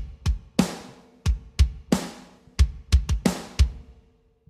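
Rock drum kit multitrack played back: deep kick drum hits under ringing tom strokes, a quick pattern of about three hits a second that stops just before the end.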